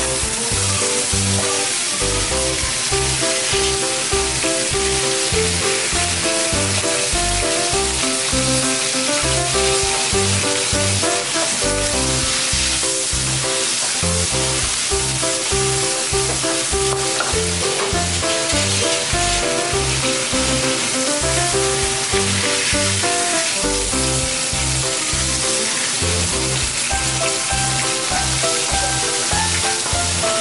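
A whole Japanese seabass sizzling steadily as it fries in hot oil in a frying pan. Background music with a regular beat plays throughout.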